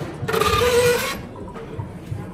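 Door of a 1949 Vendo 39 Coca-Cola bottle vending machine being pulled open: a mechanical rattle with a brief squeak, lasting about a second.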